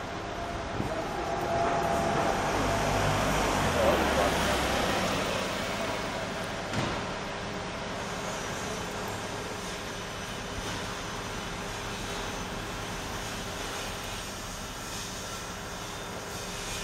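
Road traffic noise, with a motor vehicle passing that is loudest about four seconds in and then fades. After that comes a steady background hum of city traffic.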